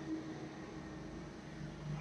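Low steady hum and hiss of room noise, with no distinct events.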